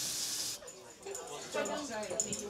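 Food sizzling and frying on a restaurant kitchen stove, a steady hiss that cuts off suddenly about half a second in. Faint voices of diners follow.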